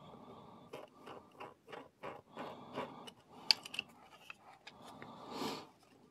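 A small screw being turned with a precision screwdriver into a black plastic model part. It gives irregular crunching and creaking clicks as it bites into the plastic, with one sharp click about three and a half seconds in.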